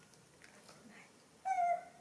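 A baby macaque gives one short, high-pitched call about one and a half seconds in, dipping slightly in pitch at the end.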